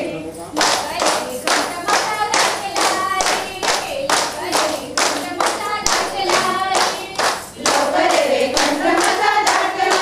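A group of women singing a Goan fugdi song in chorus while clapping their hands in a steady rhythm, about three claps a second. The singing swells near the end.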